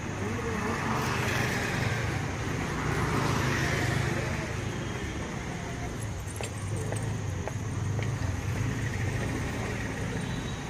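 Road traffic passing on a city street, a steady low rumble that swells twice, with faint voices in the background.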